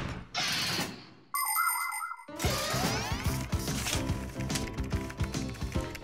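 Cartoon sound effects: a sliding-door whoosh that fades out, then a short electronic chime about a second and a half in, followed by light background music with a steady beat.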